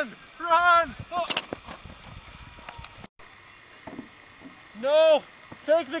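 Men yelling in alarm: a couple of loud shouted cries in the first second, a sharp crack just after, then a burst of repeated yells in the last second and a half.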